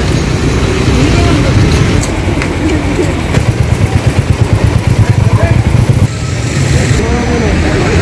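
Road traffic with a motorcycle engine idling close by, its low pulsing running steadily for a few seconds in the middle, with voices in the background. The sound changes abruptly about six seconds in.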